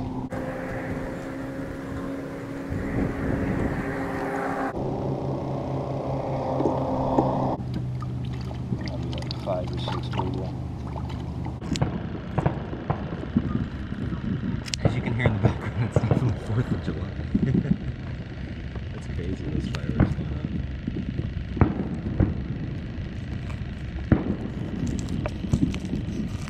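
A steady motor hum for the first seven seconds or so. Then, from about twelve seconds in, a run of sharp clicks and crunches as kitchen shears cut through a green sunfish on a plastic cutting board, chopping it into pieces of cut bait.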